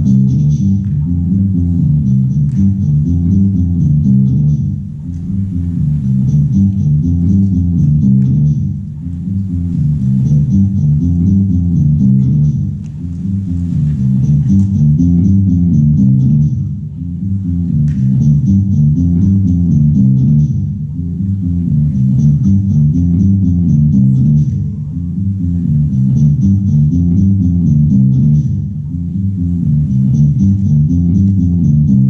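Instrumental guitar music played through an amplifier, a repeating phrase with a short dip in loudness about every four seconds. No singing.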